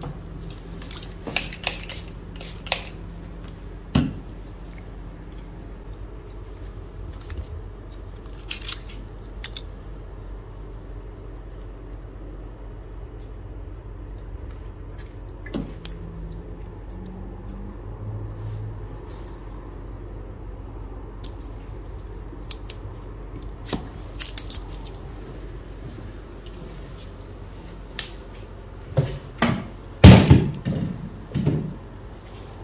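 Scattered light metallic clicks and taps as a fresh blade is handled with tweezers and fitted into a replaceable-blade straight razor, with a few sharper ticks about four seconds in and again past twenty seconds.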